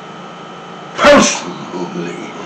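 A man's sudden loud burst of breath and voice about a second in, short and sneeze-like, followed by quieter low voice sounds.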